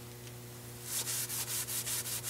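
Hand scrubbing a grease-stained wet concrete floor, working cleaner into the oil stain. Quick rubbing strokes start about a second in, about four a second, over a faint steady hum.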